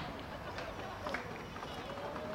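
Distant voices of players and spectators calling out across a football pitch, with a long drawn-out shout near the end.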